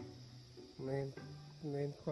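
A man speaking Mandarin in short phrases, with a faint steady high hiss underneath.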